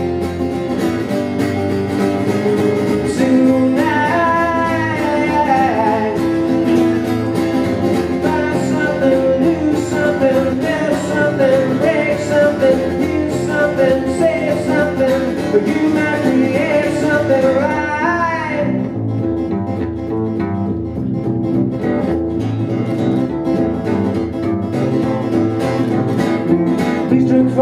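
Live acoustic guitar strumming with double bass, playing an instrumental passage between verses of a folk-style song. A wavering, gliding melody line rides over them for most of the passage and stops about two-thirds of the way through, leaving guitar and bass alone.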